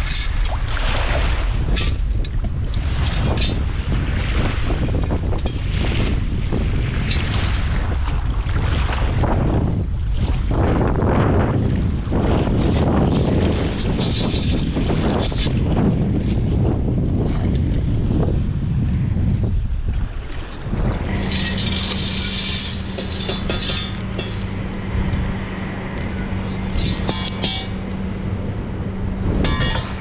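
Strong wind buffeting the microphone along with water sloshing in the shallows as a metal sieve scoop is worked through the sand. About two-thirds of the way through, this gives way to a steady low hum with crackly bursts over it.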